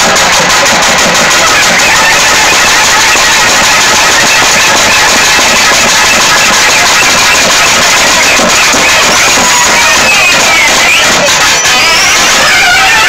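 Thavil barrel drums played fast and continuously by a troupe of dancing drummers, loud and distorted. Near the end a reed horn line glides in over the drumming.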